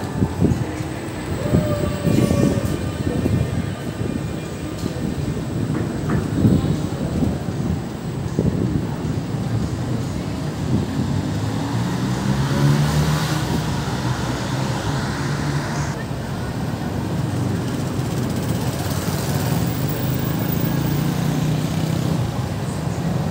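Busy city street ambience: passers-by talking in the first half, then from about halfway a vehicle's steady low hum that lasts to the end.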